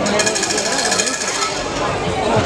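A hand bell shaken fast: an even, rapid metallic ringing rattle that stops about a second and a half in, over crowd voices.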